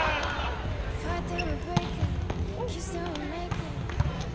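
Volleyball game sound: players' voices with a shout at the start and a couple of sharp ball hits or thumps midway. Soft background music starts under it about a second in.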